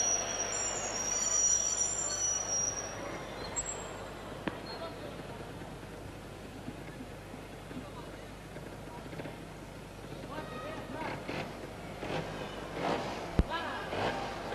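Indoor arena sound under a trials motorcycle riding an obstacle section: crowd noise and the bike's engine low in the mix, with high steady whistle-like tones in the first few seconds. A single sharp thump comes near the end.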